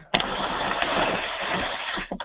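A loud, steady rush of static-like noise that starts suddenly just after the start and lasts almost two seconds, then breaks up.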